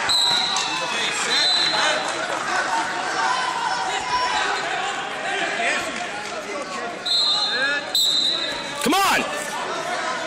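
Echoing gym-hall crowd chatter and voices, with several short shrill referee whistle blasts: one near the start, one at about a second and a half, and two close together near the end. A loud shout-like burst comes just before the end.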